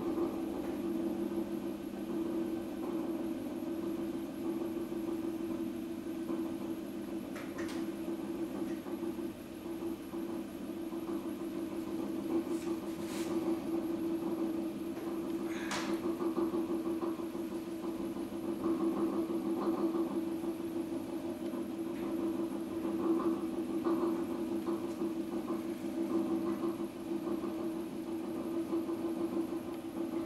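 Electric potter's wheel motor running at a steady speed with a constant low hum, a few brief clicks and scrapes over it.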